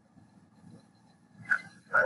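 A dog barking twice in the background, short sharp barks about one and a half and two seconds in, over faint room noise.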